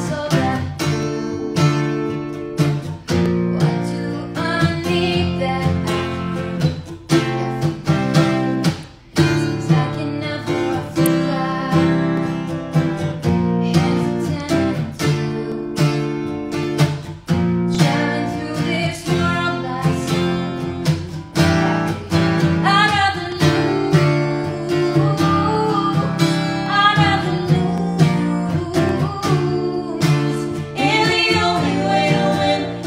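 Acoustic guitar strummed in a steady rhythm, with a woman singing a slow melody over it.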